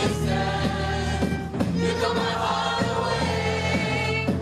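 A choir singing in harmony over live beatboxing, which keeps a steady beat underneath.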